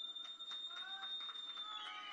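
Shrill whistling from the audience: one high note held steady, sliding lower near the end, with fainter whistles wavering beneath it.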